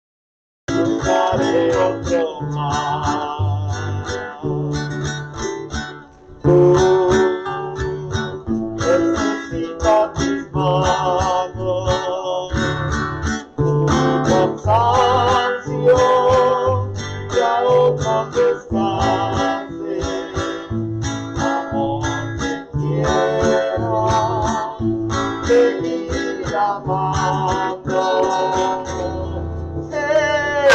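Acoustic guitar strummed in chords with a bass line, accompanying a singing voice; the music starts abruptly less than a second in.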